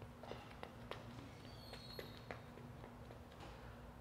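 Faint footsteps of athletic shoes on a rubber gym track, a few soft steps a second, over a faint steady hum.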